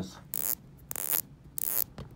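Unidirectional rotating bezel of a yellow gold Rolex Submariner Date (116618LN) turned in three quick sweeps, each a rapid run of crisp ratcheting detent clicks.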